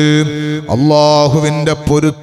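A man's voice chanting in a melodic, drawn-out style at a microphone, holding long notes with gliding rises and falls in pitch between them.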